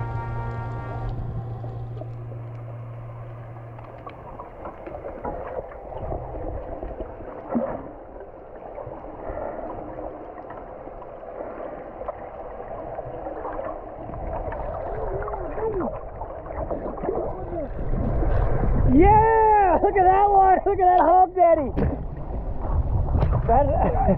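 Muffled water noise and bubbling picked up by a camera underwater, with the tail of background music fading out at the very start. From about three-quarters of the way in, a muffled voice whoops again and again in loud swoops that rise and fall in pitch.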